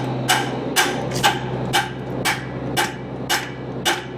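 Hammer blows on a semi trailer's frozen brakes, metal striking metal about twice a second with a short ring after each hit, to knock the brakes loose.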